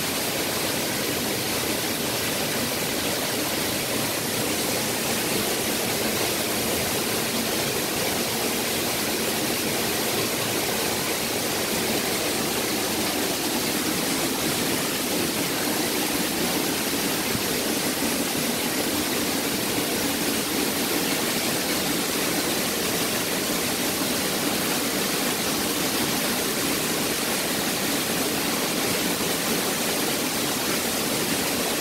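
A waterfall in heavy flow, swollen by recent rain, with water pouring down in a steady, unbroken rush.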